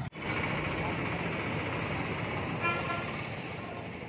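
Street traffic noise with motorcycles passing, and one short vehicle-horn toot about two-thirds of the way through.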